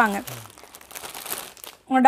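Plastic garment packaging crinkling as children's clothes are handled, a steady rustle for over a second between brief bits of a woman's voice at the start and end.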